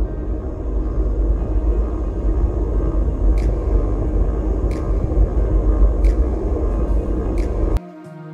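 Wind rushing over the microphone of a camera on a moving bicycle, a loud steady low rumble with road noise and a few faint clicks. It cuts off suddenly just before the end.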